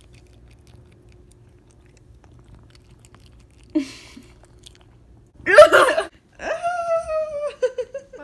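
A cat crunching and chewing dry kibble from a bowl, heard faintly close up. In the second half comes a short loud burst, then a high-pitched voice-like sound that falls slightly in pitch.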